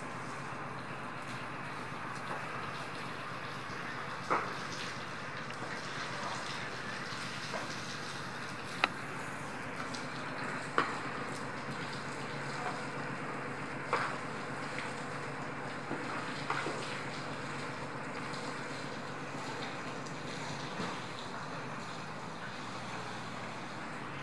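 Steady background noise with a few scattered short knocks, a couple of seconds apart and in no regular beat.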